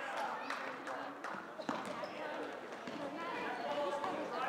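Indoor basketball game: a few sharp thuds of the ball and feet on the hardwood court, over faint background chatter from spectators.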